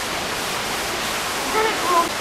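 Steady rushing noise of running water, even and unbroken. A voice starts speaking about one and a half seconds in.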